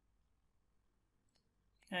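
Near silence with a single faint computer-mouse click about one and a half seconds in, then a voice begins speaking near the end.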